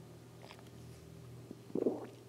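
A person drinking water from a glass close to a microphone, with a gulp about three-quarters of the way in, over a steady low electrical hum.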